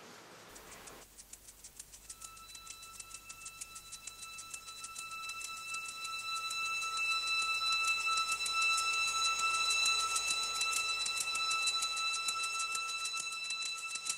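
Fast, even clock-like ticking with steady high ringing tones joining about two seconds in, the whole growing steadily louder: a ticking sound-effect build-up on the soundtrack.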